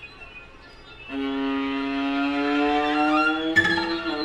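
String quartet playing contemporary music: after about a second of quiet, a single bowed note enters and slides slowly upward in pitch, and a sharp accented attack breaks in shortly before the end.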